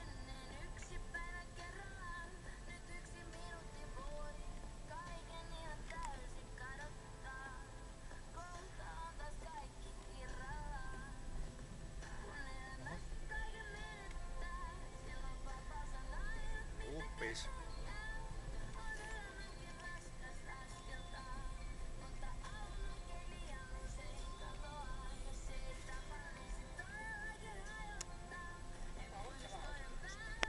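Car radio playing a song with singing, heard inside a moving car's cabin over a steady low rumble from the car.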